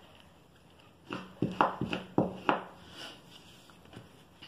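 A quick run of about six sharp knocks and clicks within a second and a half, with a faint low hum under them. The rest is quiet room tone.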